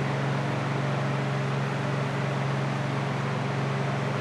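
Steady whoosh and low hum of the box fans set into the paint booth's plastic walls, running without change.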